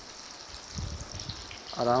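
Battered pakoras deep-frying in a pan of hot oil, a steady sizzle, with a few soft low knocks about a second in. A man says a word near the end.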